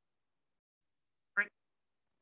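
Silence, broken once about one and a half seconds in by a single very short vocal sound from a man's voice.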